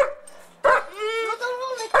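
A young German Shepherd 'talking': a drawn-out, whining howl that rises and falls in pitch, coaxed from the dog as if it were saying a word. A short sharp call comes right at the start.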